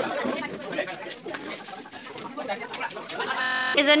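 Indistinct chatter of several people talking in the background, with small clicks of handling and movement; a single clear voice starts close to the microphone near the end.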